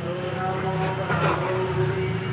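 A motor running steadily, a hum made of several held tones over a low rumble.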